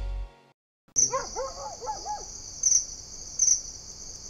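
The last of the outro music fades out, and after a short silence a night-ambience sound effect begins about a second in. A steady high cricket trill runs with two louder chirps near the end, and a quick run of short rising-and-falling calls comes over it in the first second or so.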